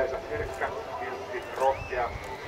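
People's voices talking in the background, with a few low thuds underneath.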